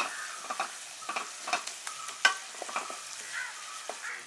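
Sliced onions and tomatoes sizzling in oil in a black kadai while a wooden spatula stirs and scrapes them, with scattered clicks of the spatula against the pan and one sharper knock a little past halfway.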